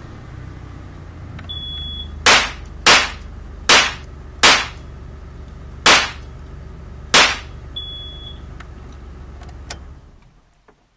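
A shot timer's high start beep, then six sharp gunshots over about five seconds at uneven spacing, then a second beep from the timer. A low steady hum runs underneath.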